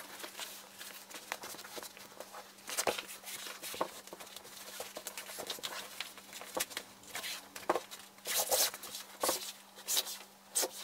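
Sailcloth for a junk-rig sail being handled and smoothed flat by hand: irregular rustling and crinkling of the fabric with a few soft knocks, busiest near the end.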